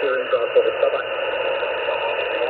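Single-sideband voice on the 20-metre amateur band from the speaker of an ICOM IC-R75 communications receiver. The voice is thin and narrow, sits in steady radio static, and gives no clear words. It is heard in about the first second, then mostly static hiss.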